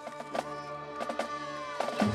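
Marching band holding sustained chords, with a few scattered percussion taps and one note sliding down near the end.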